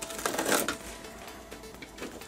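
A knife blade cutting through the tape on a cardboard box, one scratchy rasp about a quarter second in that lasts about half a second, over faint background music.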